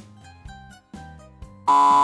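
Soft background music, then near the end a loud, steady cartoon buzzer sound effect lasting under a second: the 'wrong' signal for a hand bone put where the foot belongs.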